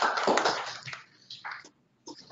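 A few people clapping, fading out within the first second; then near silence with a couple of faint short taps, the audio cutting out entirely just before the end.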